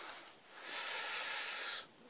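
Aerosol can of CRC mass air flow sensor cleaner spraying: one steady hiss lasting a little over a second that cuts off suddenly.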